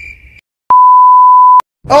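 A single loud, steady electronic bleep tone, one pure pitch lasting about a second, starting and stopping abruptly with dead silence on either side: an editing bleep spliced between two takes.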